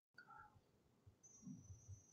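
Near silence: faint room tone, with a faint thin high tone in the second half.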